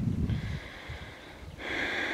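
A man's audible breath drawn in, a steady hiss rising about three-quarters of a second before the end, after a brief low rumble of wind or handling at the start.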